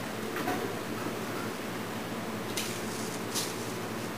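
Plastic vacuum-bag sheeting crinkling briefly a few times as it is handled, the clearest crinkles near the middle and toward the end, over a steady low hum.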